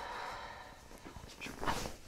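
A woman breathing out through her mouth on cue during a chiropractic back adjustment, a soft exhaled hiss that fades away within the first second. A short, sharp burst of noise follows near the end.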